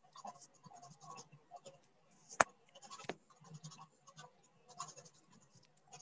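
Faint scratching and rustling over a video-call microphone, with one sharp click about two and a half seconds in and a softer click about half a second later.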